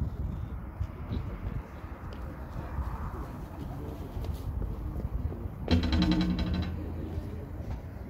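Wind buffeting the microphone with a steady low rumble. About six seconds in, a low, steady pitched sound lasts about a second and is the loudest thing heard.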